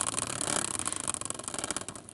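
Hand-spun caster wheel turning in its metal fork bracket as a prize wheel, giving a rapid ticking that slows and fades as the wheel coasts down.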